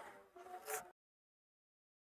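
Near silence: a faint steady hum for just under a second, then the audio cuts off to dead silence.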